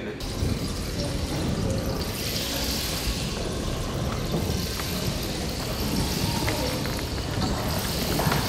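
Rainstick (palo de lluvia) tipped upright: small pebbles and ground glass trickle down inside and strike the internal spines, a continuous rushing patter like pouring water, brightest around two to four seconds in.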